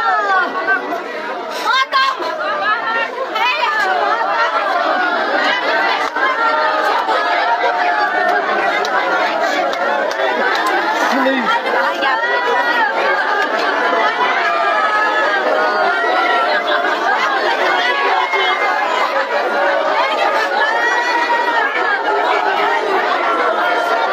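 A crowd of many voices talking and calling out over one another, loud and continuous.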